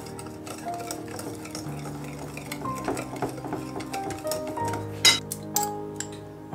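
A wire whisk beating a thick egg-yolk and sugar custard base in a ceramic bowl, its wires clicking and scraping against the bowl in quick irregular strokes, with a louder clink about five seconds in.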